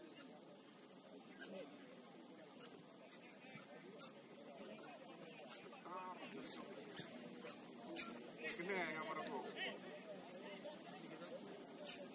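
Indistinct voices and calls of people at a football match, heard from a distance, with scattered sharp clicks, the loudest about eight seconds in.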